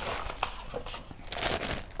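Plastic packaging crinkling and rustling as accessories are handled and taken out of a box, with a small click about half a second in and a louder rustle a little past the middle.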